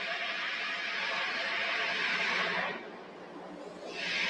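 Steady hiss of the launch control radio loop held open with no voice on it, dropping out a little under three seconds in and returning near the end, just ahead of the next countdown call.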